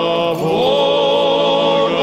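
Orthodox liturgical chant: male voices singing long held notes, the pitch shifting once about half a second in.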